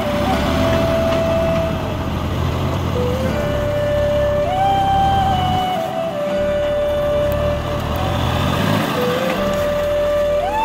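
Massey Ferguson 9500 tractor's diesel engine running steadily as the front loader works soil, under background music with a slow melody of held notes that step up and down.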